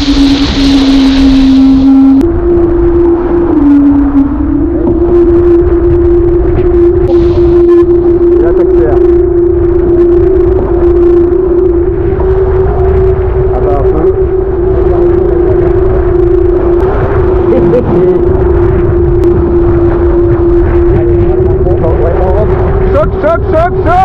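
Diam 24 trimaran sailing fast: wind and water rush past under a loud, steady humming tone from the boat at speed. The hum steps up in pitch, dips and settles higher in the first five seconds, then holds.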